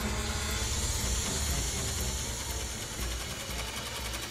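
A locust swarm whirring: a steady, dense hiss with a low rumble beneath it.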